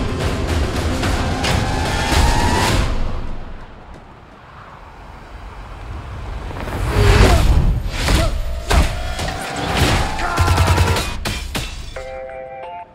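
Loud action trailer score with heavy low booms and sharp crashing hits. The loudness dips about four seconds in, then builds again. Two slow rising tones sit over the hits.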